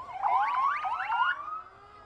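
Several emergency-vehicle sirens sounding together: many rising sweeps overlap for about a second and a half, then trail off into a fading steady tone.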